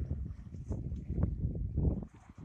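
Wind buffeting the microphone on the deck of a sailboat at sea: an uneven rumble that comes in gusts, strongest in the second half.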